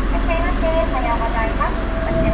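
A high voice speaking, untranscribed, over the steady low hum of a car standing still with its engine on.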